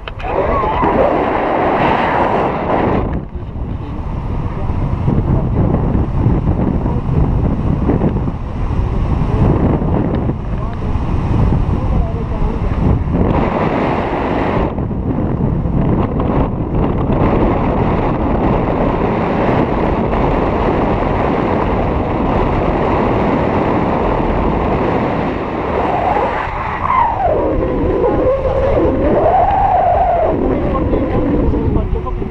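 Airflow buffeting the microphone of a camera on a selfie stick during a tandem paraglider flight, a loud, steady rushing with brief dips. Near the end a wavering pitched sound rises and falls over it.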